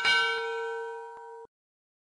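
Notification-bell sound effect: a single bell-like ding of several steady tones, struck as the subscribe animation's bell icon is clicked. It fades slowly and cuts off suddenly about a second and a half in, with a couple of faint ticks inside it.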